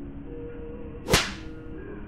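A single whip-crack sound effect about a second in: a sharp crack with a short hissing tail, over faint background music.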